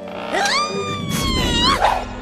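A cartoon squirrel's long, drawn-out vocal call, voiced for animation. It rises sharply, holds for about a second while sliding slightly lower, then rises again at the end, with a low rumble beneath its second half.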